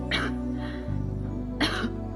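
A woman coughing weakly twice, short breathy coughs, over soft background music.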